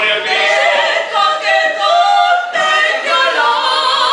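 Two women singing a duet a cappella, their two voices together in harmony, with a short break between phrases about halfway through.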